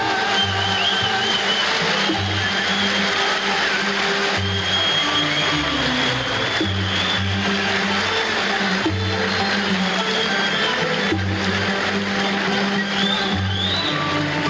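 Live Arab orchestra playing an instrumental passage in the maqam Rahat al-Arwah, with a low bass figure that repeats about once a second beneath a dense melodic line from the ensemble.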